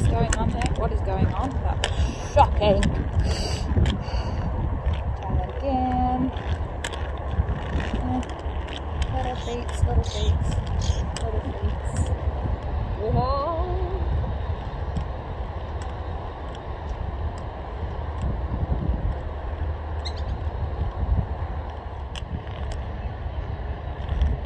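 Steady low rumble of wind on the microphone mixed with quad roller-skate wheels rolling over a hard court surface, with scattered clicks and knocks.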